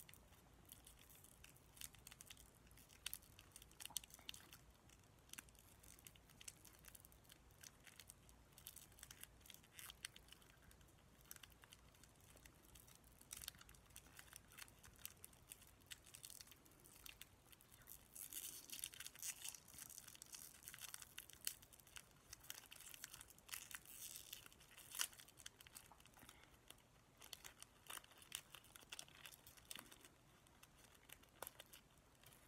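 Faint crinkling and small crackles of a wrapper being handled, with scattered sharp clicks throughout. It is busiest for a few seconds about two-thirds of the way through.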